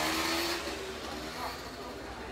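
Indistinct background voices over a steady hiss, loudest in the first half-second.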